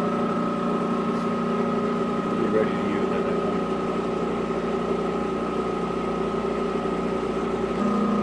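Balzers HLT-160 dry helium leak detector running through its start-up initialization, its Edwards ESDP-30 dry scroll pump giving a steady machine hum with a few steady tones. The low hum grows a little stronger near the end.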